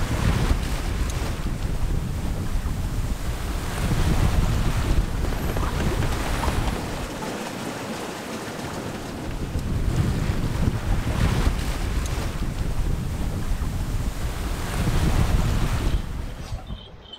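Wind buffeting the microphone over the rush of sea and water along the hull of a sailboat under sail. The buffeting eases for a couple of seconds about halfway through.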